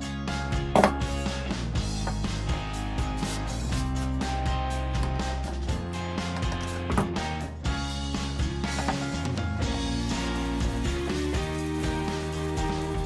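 Background music with held notes and a steady beat, with one sharp knock about a second in.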